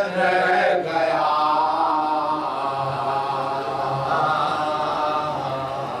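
Men chanting a Shia devotional salam without instruments: a lead voice at a close microphone holds long, slightly wavering notes, with the other men singing along.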